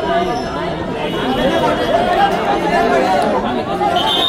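Crowd chatter: many voices talking over one another at once, a steady hubbub from spectators and players around a kabaddi court.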